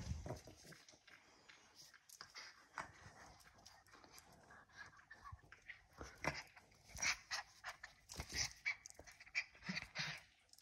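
A small wire-haired dog being scratched and ruffled by hand: a run of short, irregular bursts of the dog's breathing and of fur rubbing against the hand, starting with a low bump and busiest in the second half.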